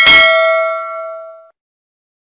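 Notification-bell 'ding' sound effect: one bell stroke that rings for about a second and a half, its higher overtones dying first, then stops abruptly.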